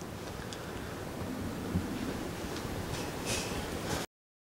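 Faint handling of a small plastic toy accessory: a few light ticks and a brief soft rustle over steady room hiss.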